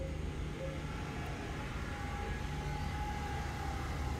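Faint, steady outdoor background noise: a low rumble with hiss. A thin, faint hum joins it from about halfway through to near the end.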